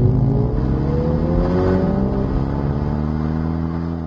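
Mini Cooper S's turbocharged four-cylinder engine heard through its twin centre exhaust while driving, its note rising in pitch as the car accelerates for about two seconds, then holding steady.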